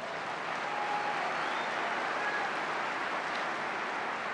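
An audience applauding: dense, even clapping at a steady level.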